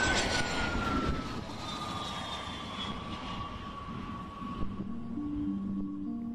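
The RQ-4 Global Hawk's single Rolls-Royce F137 turbofan running as the drone takes off and passes, a jet roar with a whine that slowly falls in pitch and fades. Music comes in near the end.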